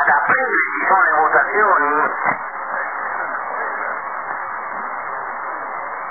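Shortwave radio reception on the 45-metre band: a man's voice for about two seconds, then steady static hiss as the channel goes quiet between transmissions. The sound is thin and narrow, cut off above the voice range like a radio speaker.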